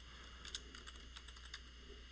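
Faint typing on a computer keyboard: a run of light, irregular keystroke clicks.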